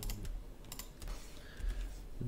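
A few separate clicks from a computer keyboard and mouse.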